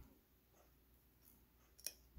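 Near silence: a nail brush mixing glitter into clear gel in a small plastic dish, with one short click near the end.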